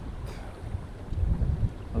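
Wind buffeting the microphone, an uneven low rumble that rises and falls, with a shallow river flowing behind it.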